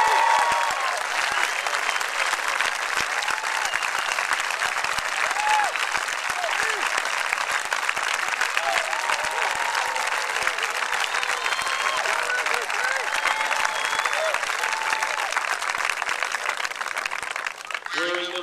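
Large grandstand crowd applauding and cheering steadily, with scattered shouts and whoops through the clapping.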